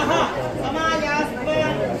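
Several people talking, their voices overlapping in chatter.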